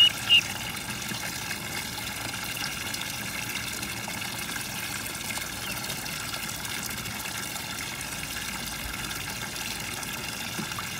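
Ducklings giving two or three short, high peeps right at the start, over a steady rush of water in a plastic tub where they are swimming.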